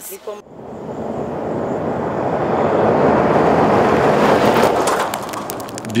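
A vehicle passing on a gravel road: tyre and road noise builds to a peak in the middle and then fades, with scattered clicks near the end.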